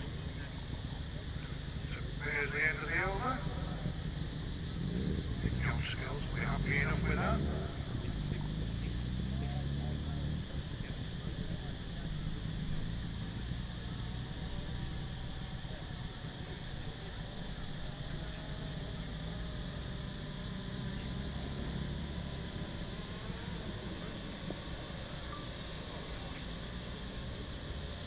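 Indistinct voices a couple of seconds in and again around six to seven seconds, over a steady low rumble that swells briefly between about five and ten seconds.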